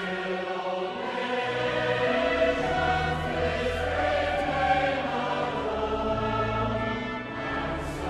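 Choral music: a choir singing long, held chords over a slowly moving bass line.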